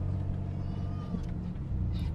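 Steady low rumble of a car's engine and road noise heard inside the cabin while driving slowly, with a faint brief high-pitched tone about halfway through.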